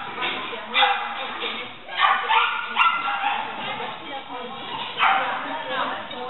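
Shetland sheepdog barking repeatedly in short, high-pitched yips during agility work.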